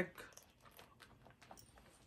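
Faint, irregular small clicks and taps from hands handling a small coated-canvas pouch and its strap's metal hardware.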